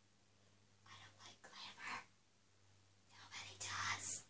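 A person whispering in two short bursts, about a second in and again near the end, over a faint steady low hum.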